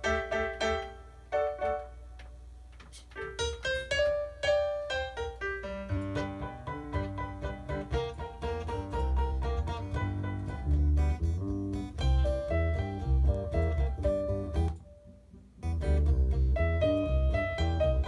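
Piano being played, single-note lines at first, then fuller with deep bass notes from about six seconds in; the playing stops briefly near the end, then goes on.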